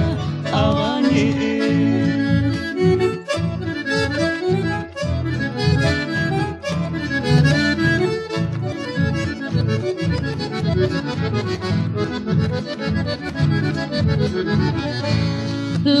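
Instrumental chamamé break: an accordion plays the melody over guitar accompaniment and a steady, evenly pulsing bass rhythm.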